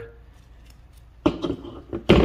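A man coughs once, a little over a second in, after a quiet stretch with a few faint clicks as the handles of a hand wire crimping tool are squeezed.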